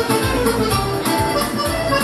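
Hohner chromatic button accordion playing a samba melody live over a backing accompaniment with a steady drum-and-bass beat.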